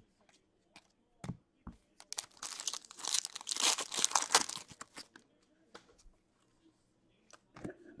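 Foil wrapper of a hockey card pack being torn open and crinkled by hand, a dense burst of tearing and crinkling lasting about two and a half seconds in the middle, after a few light clicks of cards being handled.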